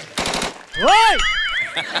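A short, rapid machine-gun-like rattle of shots, then a warbling tone that rises and falls, a comic gunfire sound effect.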